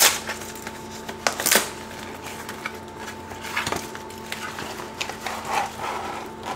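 Cardboard food packaging being torn open and handled: a sharp rip at the start, a few more sharp snaps and taps, then softer rustling near the end, over a faint steady hum.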